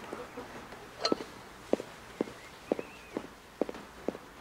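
A person's footsteps on a wooden floor, a run of separate sharp steps about two a second, starting about a second in.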